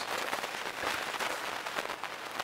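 Bubble wrap and packing material crinkling and crackling as they are handled, a dense run of small crackles.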